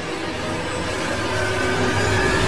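Outro sound effect: a dense rushing whoosh with faint sustained tones under it. It starts suddenly and slowly builds in loudness.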